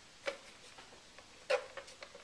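Two light clicks of a metal offset icing spatula knocking against a hard surface as buttercream is scooped and spread. The second click, about a second and a half in, is the louder.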